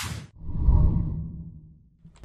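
Logo-intro sound effect: a brief whoosh at the start, then a deep low rumble that swells and fades out over about a second and a half.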